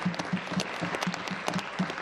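Applause from a group of legislators, many hands clapping at once.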